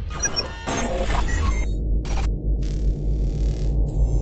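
Intro soundtrack of an animated logo: a deep, steady bass drone under several swishing noise sweeps, with a few short bright tones near the start.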